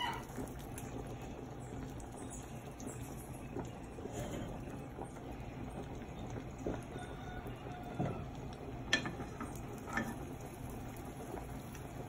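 Beaten eggs cooking in oil in a frying pan, a soft steady sizzle, with a few light clicks of the metal ladle against the pan near the end.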